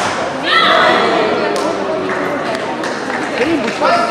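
Sounds of a badminton doubles match in an echoing sports hall: a high, falling cry about half a second in, thuds and a sharp knock on the court, and players' voices.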